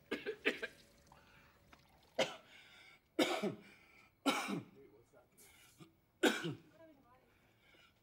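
A man coughing into his hand, about six separate coughs spread one to two seconds apart.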